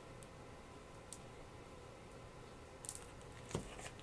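Quiet handling of paper and a small glue bottle on a work table: a few faint rustles and ticks, with a brief rustle and a small click near the end, over a low room hum.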